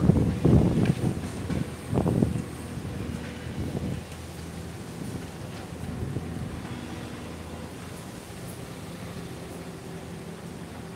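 Street traffic with a vehicle engine humming steadily; in the first couple of seconds loud low rumbling surges, like wind hitting the microphone, sit over it.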